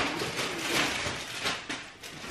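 Plastic shopping bags and grocery packaging rustling and crinkling in irregular bursts as someone rummages through them.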